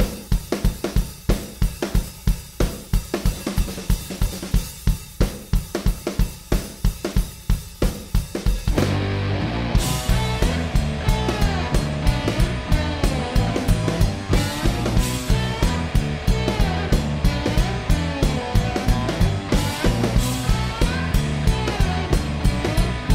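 Rock band playing live: a drum kit alone with a steady beat for about the first nine seconds, then electric guitar and bass guitar come in with a heavy riff over the drums.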